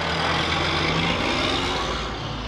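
Road traffic: a passing vehicle's tyre and engine noise, swelling and then easing near the end over a steady low engine hum.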